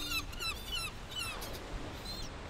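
Birds chirping: a quick run of short, high chirps, about five a second, thinning out near the end.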